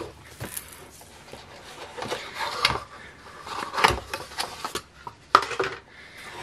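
Paper and card rustling and sliding as a 6x8 ring-bound mini album is unwrapped from its paper band and opened, with scattered taps and clicks of the album being handled. The sharpest tap comes about five seconds in.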